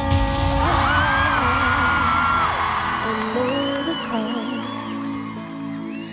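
A woman singing a slow melody with held, wavering high notes over backing music.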